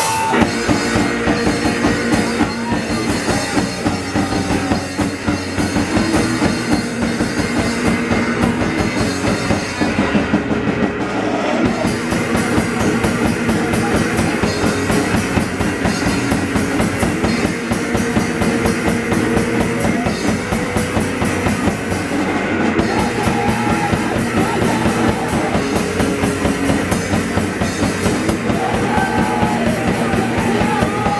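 Live D-beat hardcore punk band playing a fast song: electric guitar, bass and drum kit, with rapid steady drumming throughout.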